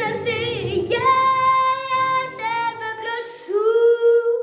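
A young girl singing a Ukrainian song over an instrumental backing track. Near the end the accompaniment drops away and her voice slides up into one long held note with vibrato.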